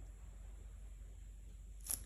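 Quiet room tone with a steady low hum, and one brief soft click near the end.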